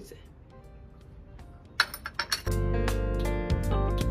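A few sharp clinks of pieces of a broken drinking glass being handled, about two seconds in. Background music comes in half a second later and carries on.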